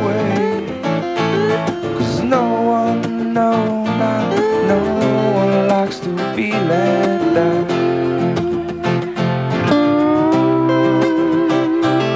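Slide guitar solo played with a steel bar on a lap-held guitar over strummed acoustic guitar, in a live band performance. The notes glide up and down between pitches, ending in a long held note near the end.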